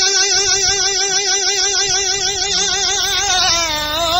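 A folk singer holding one long high note with a wide, even vibrato, the pitch sliding down near the end as the next phrase begins.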